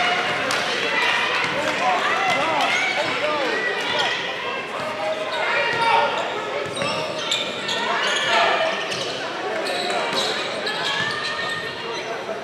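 A basketball being dribbled on a hardwood court during play, with players' and spectators' voices calling out around it.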